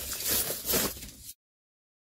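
Dry pine-needle mulch rustling and crackling as a gloved hand spreads it over the soil around a potted blueberry. The sound cuts off abruptly to dead silence a little over a second in.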